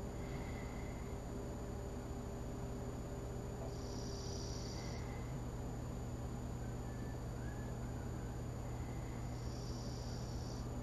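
A bird singing outside the window: a high, roughly one-second trill repeated about every five seconds, over a steady low room hum.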